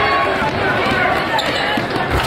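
Basketball dribbled on a hardwood gym floor, against the steady chatter and shouts of a crowd in the gym.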